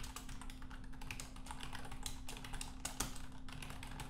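Computer keyboard being typed on: a quick, uneven run of keystroke clicks as a line of code is entered.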